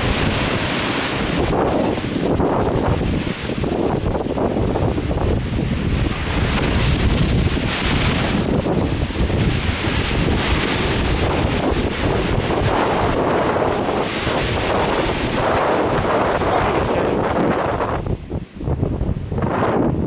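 Rough sea surging and foaming in a deep hole in coastal rock, with surf breaking along the shore, heavily mixed with wind buffeting the microphone. The noise drops out briefly near the end.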